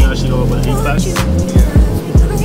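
Background music with a heavy, deep bass line and a steady kick-drum beat, under brief talking.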